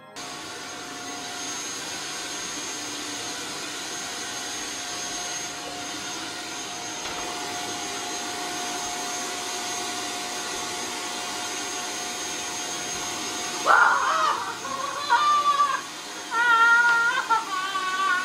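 Canister vacuum cleaner running steadily, its motor giving a constant whine over the airflow noise. About fourteen seconds in, loud, high, wavering vocal cries break in over it several times.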